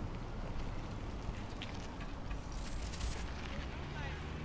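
Low outdoor rumble of wind and handling noise on a handheld camera's microphone as it is carried, with a brief hiss about two and a half seconds in.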